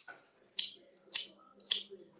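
Filarmonica straight razor passed across the hand to make the blade sing: three short, hissy scrapes about half a second apart.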